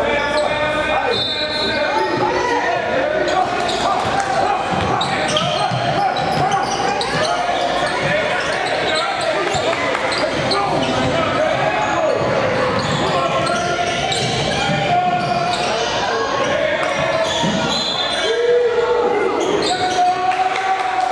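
Basketball being dribbled on a hardwood gym floor during a game, with players' and spectators' voices calling out, all echoing in a large gymnasium.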